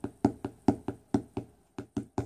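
A quick, even run of light taps or knocks, about four a second, growing sparser and less regular in the second half.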